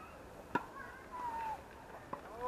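A tennis ball struck by a racket: one sharp pop about half a second in. Fainter high calls follow it.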